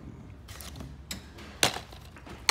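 Plastic DVD and game cases clacking against each other as a hand rummages through a box full of them, with a few separate clacks and one sharp, louder one a little past halfway.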